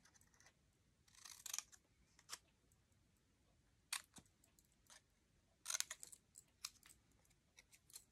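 Small scissors snipping the end of a paper strip to cut a fishtail notch: several faint, short snips with pauses between them.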